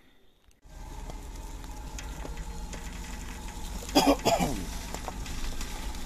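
Off-road vehicle's engine running steadily at low speed in first gear, low range, while crawling down a rough dirt track. The sound starts about half a second in. A short burst of voice cuts in about four seconds in.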